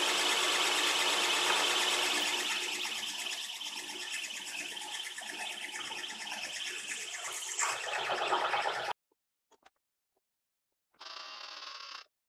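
A twist drill cutting into a steel line boring bar in a milling machine spindle, drilling holes for set screws: a steady cutting noise with a high whine, loudest at first and easing after about two seconds. It cuts off suddenly about nine seconds in, and a short burst of another mechanical sound comes about a second before the end.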